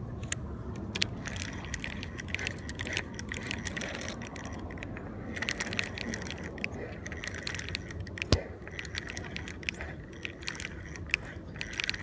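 Spinning reel being cranked to retrieve line: irregular clicking and ticking from its gears and rotor, with one louder click about eight seconds in.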